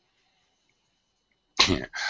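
Near silence with a faint hum, then a man's voice says a short 'yeah' about a second and a half in.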